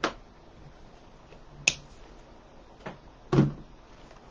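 Hands working wired faux fall foliage and zip ties on a grapevine wreath: a few isolated sharp clicks, with a heavier knock about three seconds in.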